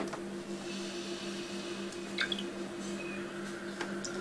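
Quiet room background: a steady low electrical hum made of two even tones, with a few faint scattered clicks and a brief faint chirp about halfway through.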